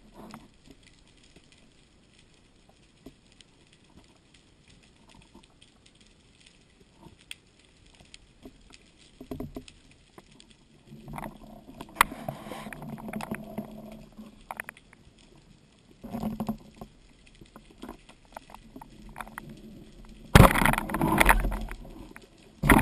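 Underwater sound picked up by a speargun-mounted camera: faint crackling and scattered clicks, with stretches of louder rustling from the diver's movement and a sharp click about twelve seconds in. Near the end comes a loud rush of water and bubbles lasting a second or two.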